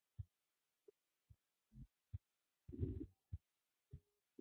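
Near silence broken by about eight faint, short low thumps, spread unevenly, with one slightly longer and fuller soft sound about three seconds in.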